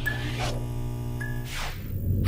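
Intro sound design under an animated neon logo: a steady low droning hum, with a whoosh sweeping through about half a second in and another near the end, and two short high tones.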